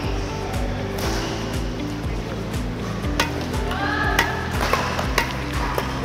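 Background music with held tones. From about three seconds in, a badminton racket strikes shuttlecocks with sharp cracks about once a second, as a net tap is drilled off fed shuttles.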